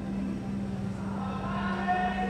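Slow instrumental music: a steady low note held throughout, with a higher chord swelling in about a second in.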